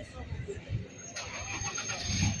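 A motor vehicle engine running, with a rush of noise that starts suddenly just over a second in and carries on. Voices can be heard faintly underneath.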